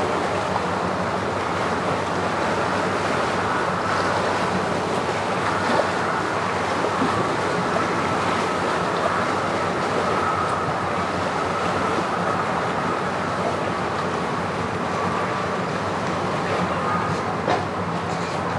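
Engines idling steadily, mixed with wind and lapping water.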